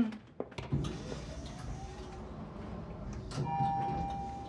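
Elevator car running with a low steady rumble, then a chime ringing near the end as it arrives at the floor.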